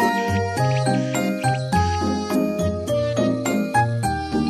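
Piano music: a run of quick, bright high notes over sustained bass notes.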